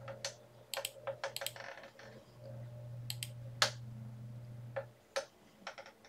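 Irregular sharp clicks of a computer mouse and keyboard as menu options are picked, about a dozen in all, over a low steady hum that stops about five seconds in.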